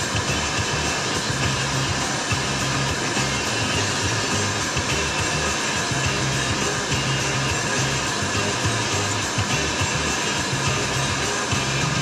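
Music from a radio with a bass line, under a loud, steady rushing hiss.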